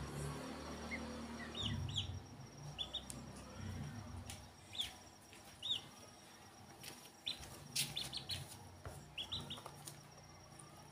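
Ducklings peeping: short, high chirps, often in twos or threes, scattered through, with a few sharp clicks in between.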